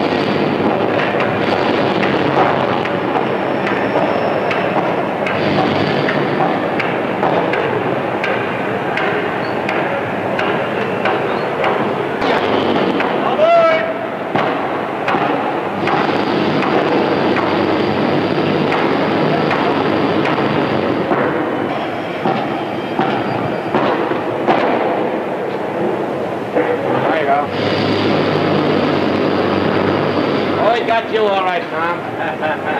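Busy railway station din: a steady mix of clatter and knocks with indistinct crowd voices.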